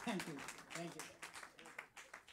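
Small audience clapping as a song ends, the individual claps thinning out and dying away, with a brief voice or two in the first second.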